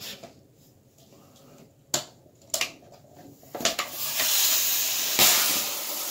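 Two sharp clicks, then from about three and a half seconds in a steady hiss of foam spraying out of a geyser-tube bottle on a toy jet boat. The plug at the back was left in, so the foam escapes out the top instead of driving the boat.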